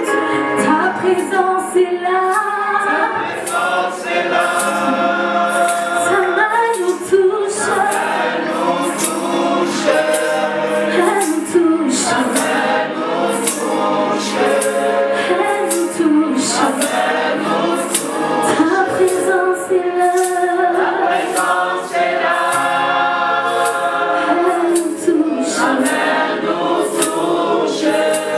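Live gospel worship song: a woman leads the singing with other singers joining, over an arranger keyboard and a steady high percussion beat.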